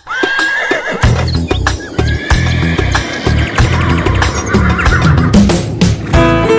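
A horse whinnies at the start, over music with a heavy low beat and galloping hoofbeats.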